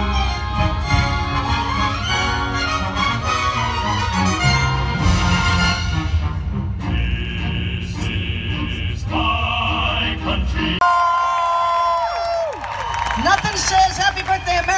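Live orchestra and chorus performing. About eleven seconds in, the music changes abruptly to a different passage: held high notes that slide down, then wavering sung notes.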